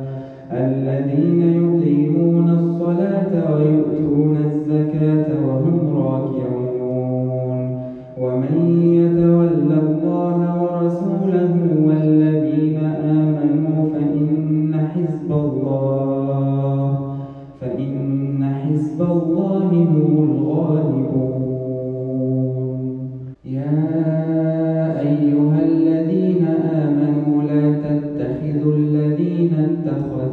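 A man reciting the Quran in Arabic in a melodic, chanted style, drawing out long held notes. His phrases break briefly for breath about 8, 17 and 23 seconds in.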